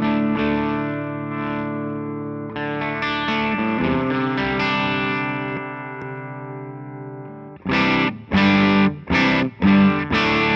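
Electric guitar played through a Suhr Eclipse overdrive pedal and amp: overdriven chords left to ring and sustain, then four short, chopped chord stabs near the end.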